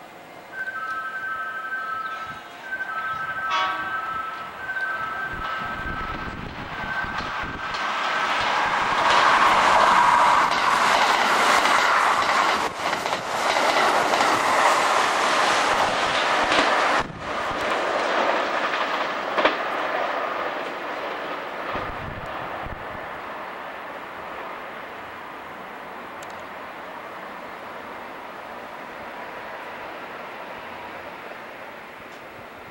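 Kintetsu limited express electric train passing at speed. A steady two-note tone repeats in short bursts for the first several seconds. Then the train's rushing wheel and motor noise builds to its loudest around the middle and fades through the second half.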